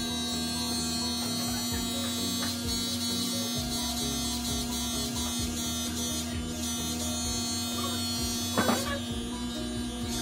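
Corded electric hair clippers buzzing steadily as they cut a boy's hair, under background music, with a short louder sound near the end.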